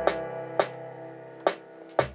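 Dancehall beat playing back at 86 BPM: sustained keyboard chords in C major over a sparse kick-and-snare pattern with an 808 kick, a few sharp drum hits cutting through the chords.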